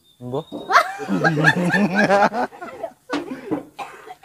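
Loud laughter: a quick run of repeated bursts starting about a second in and lasting about a second and a half, amid conversation.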